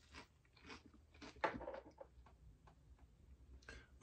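A man biting into a fish stick dipped in tartar sauce and chewing it. The chews are faint and irregularly spaced.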